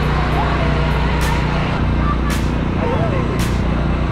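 Crowd chatter and children's voices outdoors over a steady low engine hum of road traffic, with a large truck on the road.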